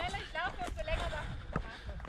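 A faint voice speaking some way off, higher-pitched and far quieter than the nearby talk, with a few scattered steps on a stony trail.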